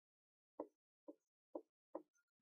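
Marker tapping and stroking on a whiteboard as Japanese kana are written: four brief faint knocks, otherwise near silence.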